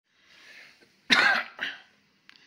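A man coughing twice: a short breath, then one loud cough about a second in and a second, weaker cough just after it.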